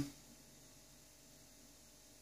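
Near silence: room tone with a faint steady hiss, after a spoken word ends right at the start.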